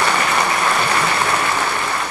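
A large seated audience applauding steadily, a dense even clapping.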